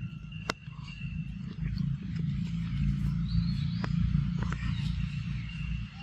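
Baby macaque biting into and chewing a ripe mango, with scattered short wet clicks and smacks from its mouth on the fruit. A rough low rumble swells from about a second and a half in and fades near the end.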